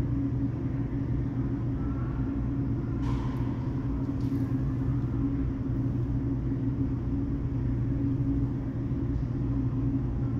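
Steady low mechanical hum, like pump or ventilation machinery, with two faint brief rushing sounds about three and four seconds in.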